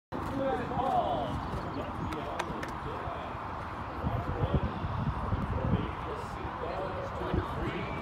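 Hoofbeats of a horse cantering on sand arena footing: dull thuds that cluster about halfway through. Indistinct voices of people talking nearby run underneath.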